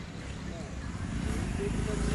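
Faint voices in the background over a steady low rumble of outdoor noise, growing slightly louder toward the end.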